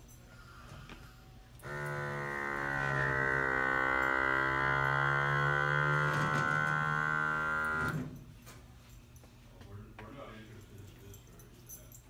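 Electric vacuum pump of a 12-volt battery-powered Nemo Grabber suction cup running for about six seconds to pull a vacuum under the cup against a metal sheet. It is a steady pitched hum that starts suddenly about two seconds in and cuts off near eight seconds.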